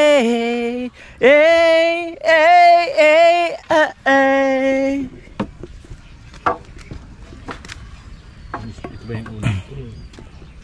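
A man singing a few long, drawn-out notes for about five seconds. After that come scattered light knocks and clatters of wooden boards being handled.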